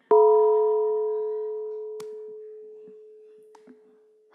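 A single struck bell-like chime: one clear tone with fainter higher overtones, ringing out and slowly dying away over about four seconds.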